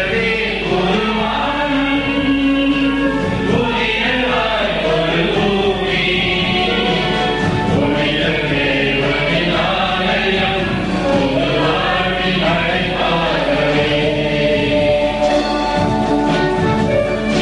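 Choir singing a hymn, continuous and steady.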